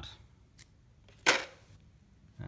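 A small metal piece set down on a hard surface: a faint tap just over half a second in, then one sharp clink with a brief high ring.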